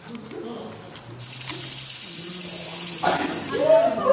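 A snake's rattling hiss, a loud, steady, high buzz that starts about a second in and cuts off just before the end.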